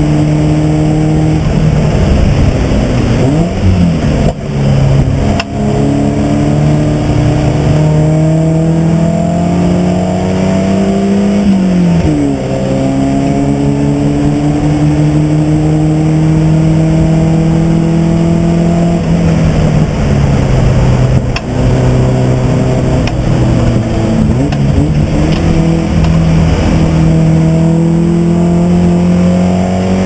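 A race car's engine heard from inside its stripped-out cabin, pulling hard and climbing in pitch as it accelerates. The pitch drops suddenly at gear changes and falls more slowly where the driver lifts off. A few sharp knocks come from the car along the way.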